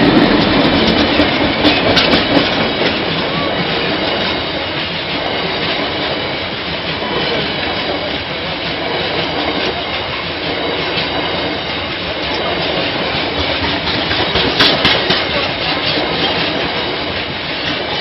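Bogie tank wagons of a freight train rolling past at close range: a steady rumble and rattle of wheels on the rails, with clickety-clack as the wheelsets cross rail joints. It is loudest at the start and eases after a few seconds, with a sharp cluster of clicks near the end.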